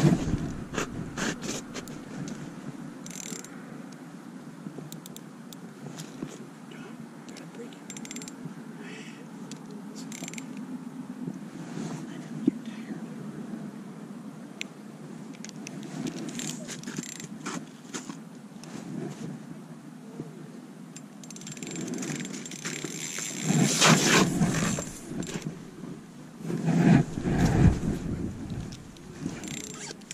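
Small spinning reel on an ice-fishing rod being cranked, its gears whirring and clicking as the line is wound in. A few louder stretches of broad noise come near the end.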